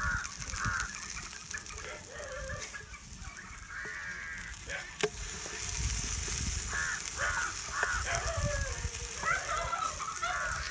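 Birds calling in series of short, harsh, repeated calls, over the faint sizzle of a burger patty frying in oil in a non-stick pan. A single sharp click comes about halfway through.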